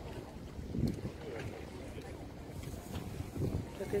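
Wind rumbling on the microphone of a handheld camera, with faint voices of people nearby swelling in and out.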